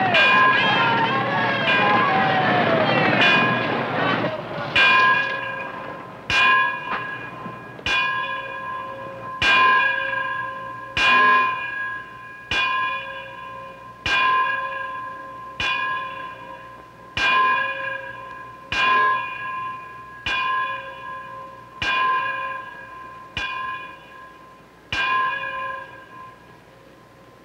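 Church bell hand-rung in a small belfry: a single bell struck over and over, about one stroke every second and a half, each stroke ringing out and fading before the next.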